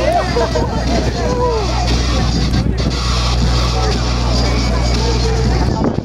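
Crowd voices and music mixed together, over a steady low hum that stops abruptly near the end.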